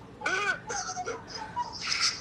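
Men laughing in several loud bursts, with high cries that rise and fall in pitch.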